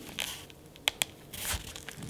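Hands handling a plastic paintball goggle frame and its strap: light rustling and crinkling, with two quick sharp clicks close together about a second in.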